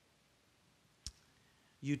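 Quiet room tone broken by a single short, sharp click about halfway through, then a man's voice starting near the end.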